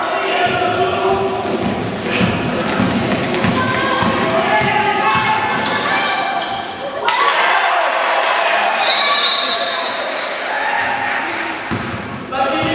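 Basketball bouncing on a gym floor during a game, with players' thuds and shouting voices echoing in the large hall. There are repeated short knocks over the first seven seconds, then an abrupt change.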